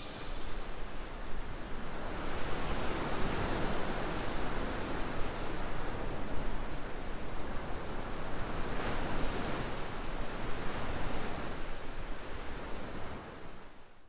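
Ocean surf: waves breaking and washing in over a rocky shore, a steady rush that swells and ebbs, fading out at the end.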